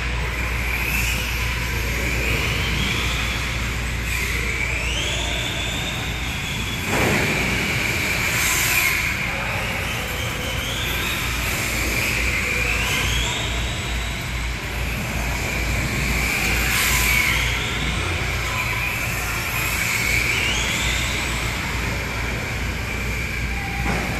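Electric RC car's motor and drivetrain whining steadily, rising in pitch again and again every two to three seconds as the car accelerates out of corners. There is a thump about seven seconds in.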